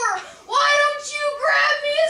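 A boy's high voice singing in long drawn-out notes, with short breaths between phrases about half a second and a second and a half in.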